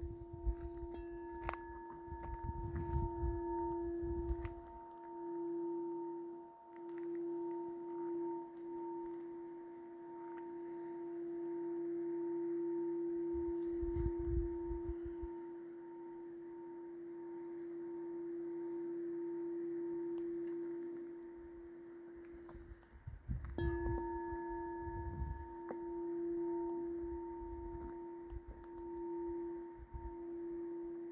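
Crystal singing bowl played by rubbing its rim: one steady, slowly swelling and fading tone with a few fainter overtones. It breaks off about 23 seconds in and starts again with a light strike. A low rumble comes and goes underneath.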